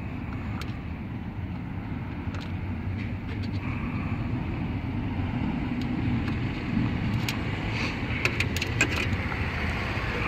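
Hand screwdriver driving a coarse-thread screw into a car radio's plastic housing through its metal bracket, heard as a few faint clicks near the end. Under it runs a steady low rumble that grows slightly louder.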